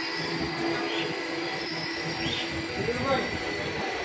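Passenger train coaches rolling slowly past a platform: a steady rumble of steel wheels on the rails, with a faint regular beat about every second and a quarter.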